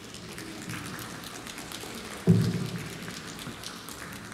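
Audience applause, a dense patter of many hand claps, with one sudden loud low thump a little over two seconds in.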